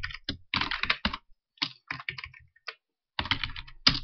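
Computer keyboard typing: a run of separate keystrokes, a brief pause about three seconds in, then a quicker cluster of keystrokes.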